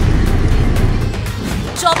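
News-channel promo music: a loud, deep bass rumble with dense noise above it, and a voice-over coming in near the end.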